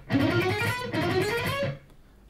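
Electric guitar playing a fast, alternate-picked three-notes-per-string scale run in E minor that climbs in pitch, then stops shortly before the end.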